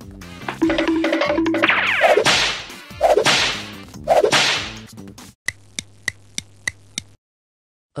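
Whip sound effects: a few loud whip swishes and lashes, then a quick run of about six sharp cracks, roughly three a second, that stops suddenly about a second before the end.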